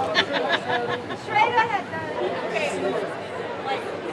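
Overlapping voices of people talking and calling out over a steady background chatter.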